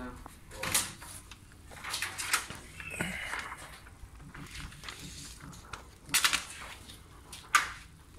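Dark window-tint film rustling as it is handled against wet car glass, with several short hissing sprays from a trigger spray bottle. There is a quick run of sprays about six seconds in and the loudest one near the end.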